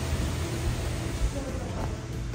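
Steady hiss of falling rain, with a low rumble underneath.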